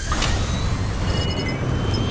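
A car engine's low rumble, with a quick run of short high electronic beeps about one and a half seconds in.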